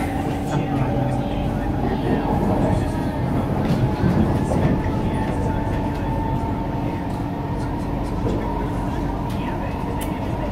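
Singapore MRT train running at speed, heard from inside the carriage: a steady rumble of wheels on rail with a steady hum running through it.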